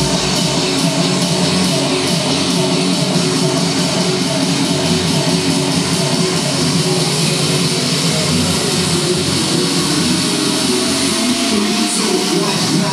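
Loud, steady music for a cheerleading routine.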